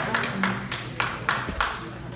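Audience applause: many scattered hand claps that thin out and stop near the end.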